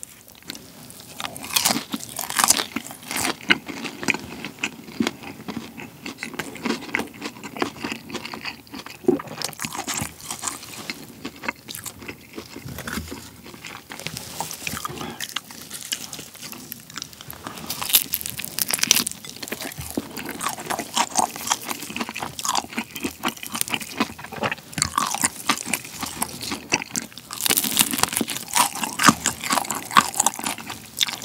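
Close-miked crunching and chewing of BHC Bburinkle fried chicken, breast meat dipped in sauce, the crispy seasoned coating crackling between the teeth. Louder bunches of crunches come every several seconds.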